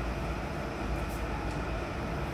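Steady low rumble with a faint hiss: the background noise of a large gymnasium hall, with no distinct events.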